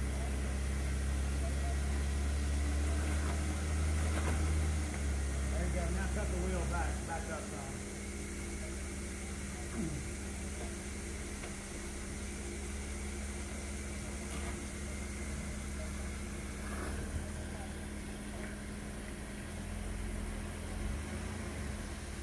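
Jeep Wrangler engine running at low speed as it crawls over a rock ledge, stronger for the first seven seconds and then easing off to a lower, steady run.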